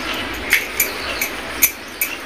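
Four short, high squeaks, roughly half a second apart, over a steady background hiss.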